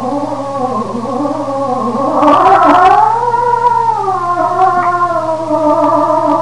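Cantorial tenor voice singing a long, drawn-out melismatic phrase with a wide vibrato, swelling loudest about halfway through. A steady low hum from the old live recording runs underneath.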